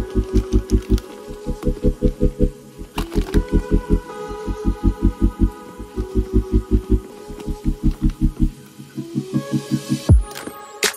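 Background music: a mellow track with a rapid, even pulsing bass note, about six or seven pulses a second, under sustained chords. A single short click sounds about three seconds in.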